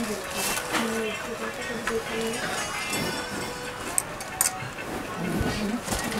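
Background music playing under faint voices, with a few light clicks and clinks of clothes hangers as gowns are lifted and shown.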